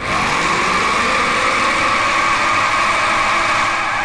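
A dramatic drone sound effect from a TV horror score: a loud, noisy, engine-like sustained rush that starts abruptly with a falling sweep in its first second, then holds steady.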